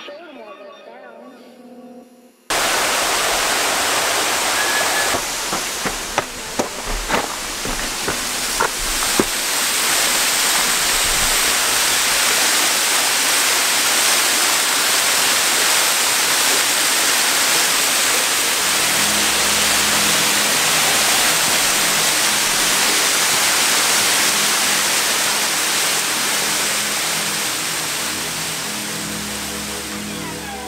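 Loud, steady rushing and splashing of a small waterfall pouring onto rocks, cutting in suddenly about two and a half seconds in after faint background music. A few sharp knocks sound in the first ten seconds, and music with a low repeating beat returns quietly under the water noise in the second half.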